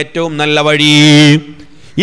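A man's voice intoning a drawn-out, chanted phrase through a microphone, holding long steady notes. It breaks off about one and a half seconds in.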